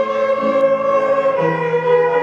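A group of children's violins playing a piece together, holding one long note while lower notes change beneath it.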